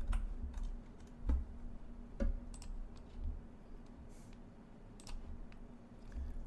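A few scattered computer keyboard keystrokes and mouse clicks, irregularly spaced, over a faint steady hum.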